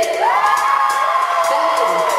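A woman's voice through a microphone, holding one long call that rises near the start and then holds, while the audience cheers and whoops.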